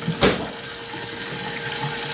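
Tap water running steadily into a stainless steel sink, with a single sharp knock about a quarter second in.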